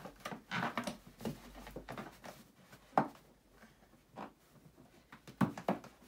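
Inflated latex balloons being handled as their necks are knotted together: irregular rubbery rubbing and rustling, with a sharp click about three seconds in and two more near the end.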